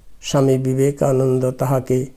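A man's voice reciting in a slow, level, chant-like intonation, in several short held phrases with brief breaks between them.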